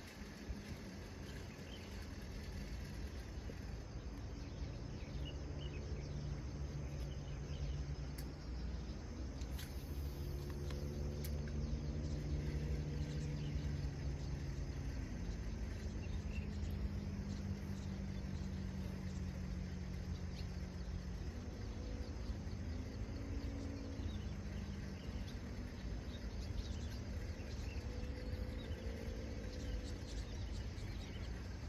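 A distant engine droning steadily, its pitch stepping up and down a few times, over a low outdoor rumble, with faint insect chirping.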